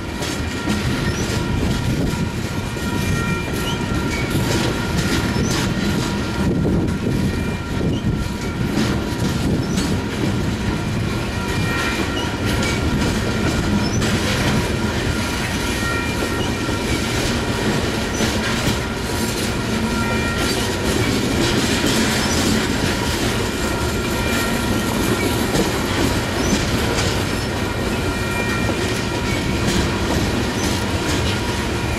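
Loaded coal hopper cars of a long freight train rolling past: a steady rumble and clatter of wheels over rail joints. A thin, high wheel squeal comes and goes on top of it.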